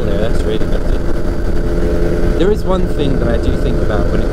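Engine of a P&M Quik flexwing microlight running steadily at cruise, heard from the open cockpit with rushing airflow.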